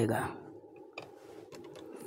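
Light clicks and taps from a hand handling wire against a switch board's plastic switches and terminals, with one sharper click about a second in.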